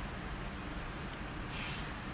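Steady background hiss of a quiet dark room, with a short soft rustle of hiss about three-quarters of the way through.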